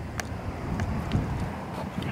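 Low steady outdoor background rumble with a few faint clicks.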